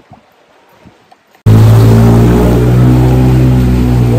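A quiet first second and a half, then a sudden jump to a loud, steady, close-up engine hum from a motorbike riding through floodwater.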